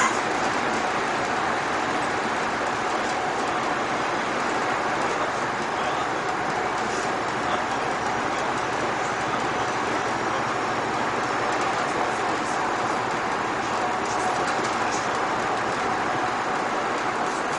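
Bus driving at a steady cruising speed: an even running noise of engine and tyres on asphalt, with a faint steady hum.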